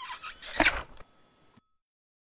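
Logo sound effect from an animated ad's end card: a quick run of short, hissy swishes over about a second, the loudest one near its end, then silence.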